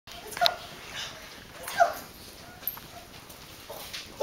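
A xoloitzcuintli (Mexican hairless dog) giving two short, sharp barks about a second and a half apart.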